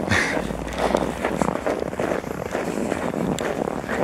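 Clothing rustling against the microphone and footsteps while walking with the camera held close, irregular and noisy throughout.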